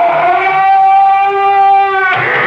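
Long drawn-out creak of a heavy door's hinges, the show's signature sign-off sound effect. The pitch sags slightly at first, then holds steady, and the creak cuts off right at the end as the door shuts.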